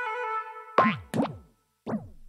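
Held music notes end about half a second in. Then come three cartoon boing sound effects for bouncing balls, each a short quick drop in pitch, the last after a moment of silence.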